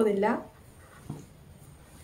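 A woman's voice finishing a word, then quiet room tone with one faint, short sound about a second in.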